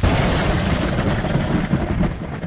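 Cinematic boom sound effect for a logo reveal: a sudden loud hit followed by a dense, steady rumble.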